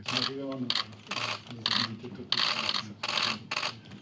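Live sound of a room during a handshake: voices talking in the background, overlaid by a series of short, rasping noise bursts, about six in four seconds.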